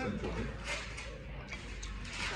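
Restaurant dining-room background: faint voices of other diners over a steady low hum.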